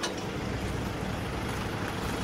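Steady low rumble of an idling diesel engine, with no change in pitch or level.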